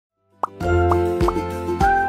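Children's TV intro jingle: cheerful music with a low bass note, set off by cartoon pop sound effects. A sharp pop comes just under half a second in, then more quick pitch-sliding pops follow every fraction of a second.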